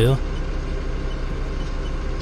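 Doosan 4.5-ton forklift engine idling with a steady low hum, heard from the operator's cab.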